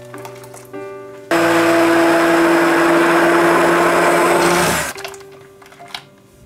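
An electric kitchen mixer runs steadily for about three and a half seconds, starting a little over a second in and cutting off suddenly near five seconds; it is the loudest sound here. Soft background music plays before and after it.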